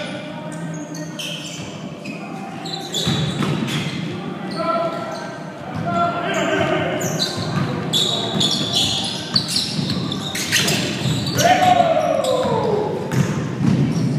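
Basketball game in a gymnasium: a ball bouncing on the hardwood floor and players' footfalls, with players' voices calling out, all echoing in the large hall.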